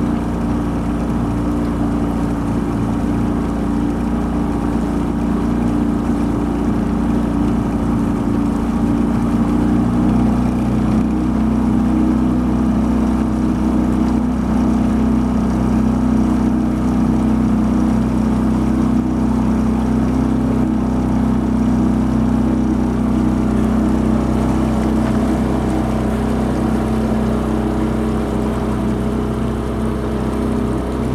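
Small boat's outboard motor running steadily at low cruising speed as the boat moves along, with a slight shift in its tone about ten seconds in.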